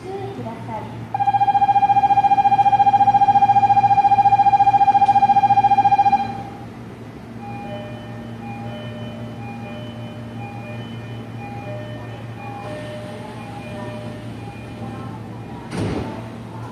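A station departure bell on a train platform rings loud and steady for about five seconds, with a fast ripple. After it comes a quieter run of short electronic tones at a few pitches, the departure warning before the doors shut. Near the end there is a thud as the train's sliding doors close.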